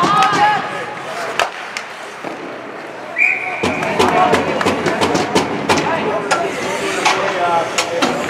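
Ice hockey rink sounds: players' and spectators' voices calling out, with hockey sticks and skates clacking and knocking on the ice. A short, high whistle tone sounds about three seconds in, after which the clicks and knocks thicken.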